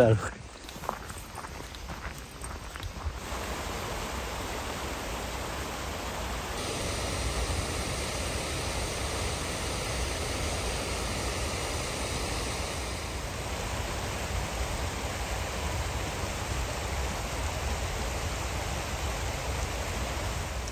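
A fast, shallow mountain stream rushing over rocks and a small weir: a steady rush of water that settles in about three seconds in.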